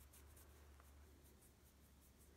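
Near silence: faint scratching of a paintbrush stroking paint onto a vinyl doll head, over a low steady hum.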